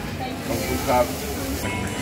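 Low background voices with a few brief fragments of speech, and music coming in near the end.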